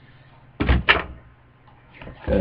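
Two quick, loud knocks or thumps, about a quarter second apart, within the first second.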